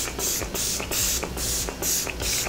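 Dermablend Lock and Last setting spray pumped from its fine-mist spray bottle onto a face, a quick run of short hissing spritzes about two a second.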